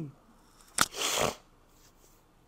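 A person's hands clapping once sharply, then rubbing briefly together with a short rustling hiss.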